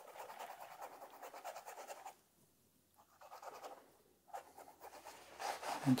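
Faint scratchy strokes of a paintbrush working a thin glaze onto canvas for about two seconds, then near quiet with a soft click.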